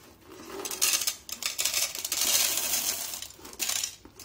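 Small white decorative pebbles poured from a paper bag into a glass aquarium, clattering against the glass and onto each other. The clatter starts about a second in and runs on steadily, stopping just before the end.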